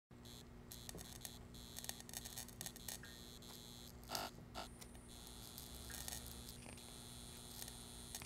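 Faint electrical buzz from a ceiling fluorescent light fixture: a steady low hum under irregular clicks and crackles, with a louder crackle about four seconds in.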